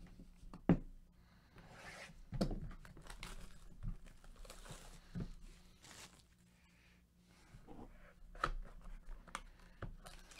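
A sealed trading-card hobby box being unwrapped and opened: plastic wrap tearing and crinkling, with scattered sharp clicks and rustles from the cardboard box being handled.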